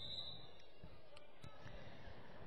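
Faint gymnasium ambience: a low, even murmur of crowd and court noise, with a faint steady high tone that stops about half a second in and a couple of light ticks.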